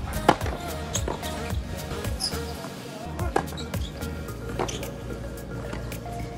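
Background music with several sharp hits scattered through it, irregularly spaced, the two strongest about a second in and past the middle: tennis balls struck with a racket and bouncing on court during play.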